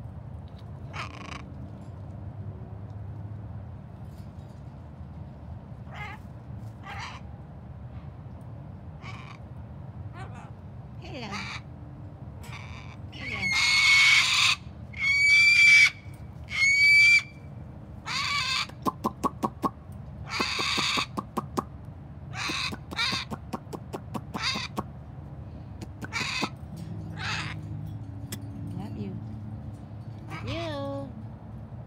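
Birds calling: short scattered calls, with three loud, harsh calls in a row about halfway through, followed by a quick run of evenly spaced clicks and more calls.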